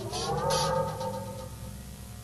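A short electronic sound effect: a pitched tone with overtones glides upward, joined by a few quick bursts of hiss. It holds for about a second and fades out by about a second and a half in.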